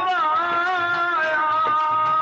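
Sikh kirtan: a man's voice holds one long note, wavering slightly at first, over a harmonium, with a few tabla strokes beneath.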